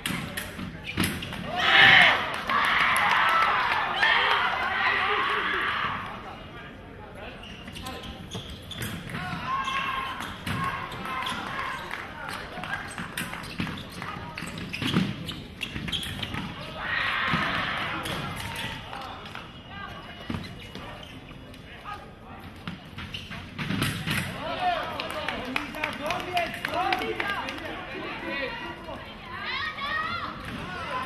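Sabre fencing in a large hall: fencers' shoes stamping and thudding on the piste amid voices. The sound swells in two louder spells, about two seconds in and again around seventeen seconds.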